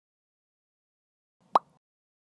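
A short, quick upward-sweeping 'bloop' sound effect about one and a half seconds in, of the kind laid over an animated title card.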